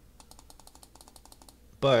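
A faint, fast run of small plastic clicks from a computer mouse, about ten a second for over a second, as the offset distance value is stepped down.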